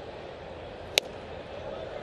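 A 96 mph fastball popping into the catcher's mitt: one sharp crack about a second in, over a faint steady ballpark crowd background.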